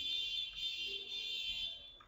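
A steady high-pitched tone with several overtones, fading away near the end.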